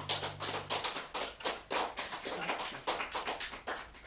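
A small audience applauding by hand, a loose patter of individual claps, while a held electronic organ chord dies away in the first second.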